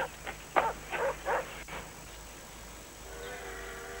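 A dog barking, a handful of short barks in the first two seconds, then stopping. Soft background music with held notes fades in near the end.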